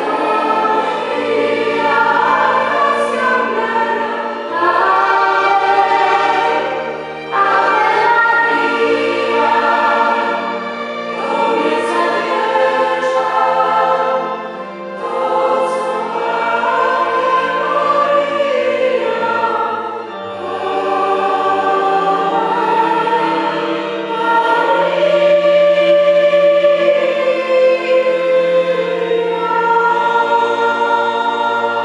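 Mixed choir of men and women singing in long held phrases, the loudness dipping briefly between phrases.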